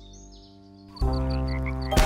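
Cartoon background music: after a quiet first second, a low held note with a light, regular ticking beat comes in suddenly. A sharp thump lands at the very end as a fake monster foot is stamped into sand.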